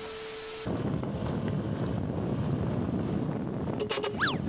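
A short burst of TV-static hiss with a steady beep under it, lasting well under a second, then steady wind rumble on an outdoor microphone.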